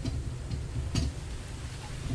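A single click about a second in, over a steady low rumble.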